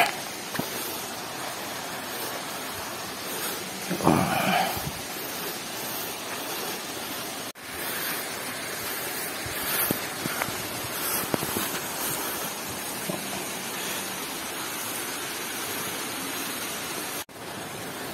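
Steady rushing of flowing water, with a short burst of a person's voice about four seconds in. The sound cuts out abruptly for a moment twice.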